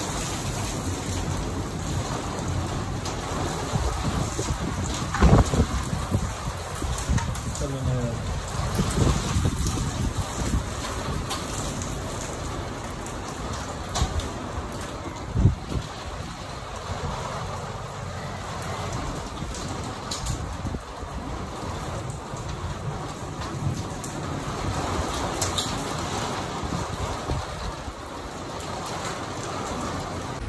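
Steady heavy rain falling during a thunderstorm, with two sharp louder knocks about five seconds in and again about fifteen seconds in.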